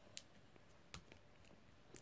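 Near silence: room tone with three faint, brief clicks spread across it.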